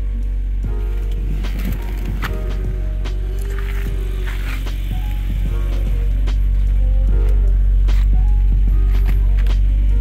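Background music over the steady idle of a 2006 BMW 330i's inline-six, running smooth now that a new ignition coil and spark plug have cured a misfire on one cylinder.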